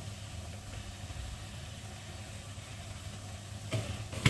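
Steady low hum and faint hiss of a lit gas stove burner under an iron wok, with a light knock near the end.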